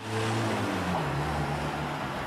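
Loud rushing noise, like wind on an outdoor microphone, with a low droning hum that slides slightly down in pitch.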